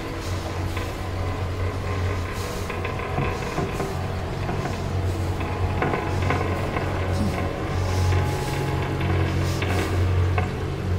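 A steady low machinery hum from a ship's engine room, with irregular short bursts of hiss, mixed under background music.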